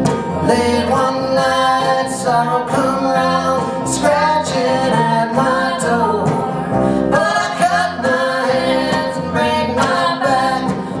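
Bluegrass string band playing live: fiddle, banjo, acoustic guitar and upright bass.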